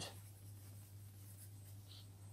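Faint scratching of a pencil writing on paper, over a steady low hum.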